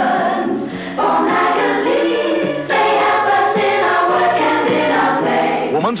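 Advertising jingle sung by a choir in long held chords, the sung phrase changing about a second in and again under three seconds in.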